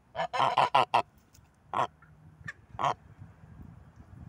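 Goose honking: a quick run of about five honks in the first second, then two single honks about a second apart.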